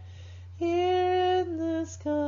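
A woman singing a hymn solo with no instruments heard. After a short breath she holds a long note, steps down to a lower one, and takes another breath near the end.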